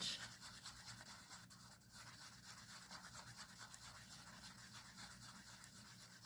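Faint scraping and rubbing of a stir stick against the inside of a small cup as epoxy resin is mixed.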